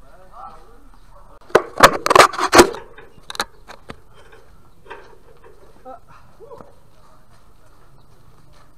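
A quick run of about six sharp, loud knocks close to the microphone, starting about a second and a half in, followed by a few fainter clicks; faint voices in the background.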